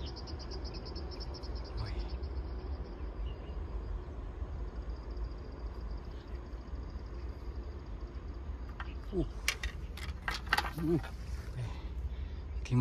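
A high-pitched insect trill, rapid even pulses of about ten a second, stops about two seconds in and resumes for several seconds, over a steady low rumble. Near the end there are a few sharp clicks and a brief low vocal sound.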